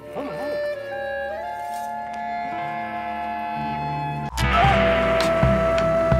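Film score music: slow, long held notes that step up in pitch. About four seconds in, the music turns suddenly louder, with a long held high note over percussion strikes.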